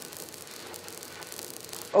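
Faint steady hiss with a light crackle from a running Van de Graaff generator charged to high voltage.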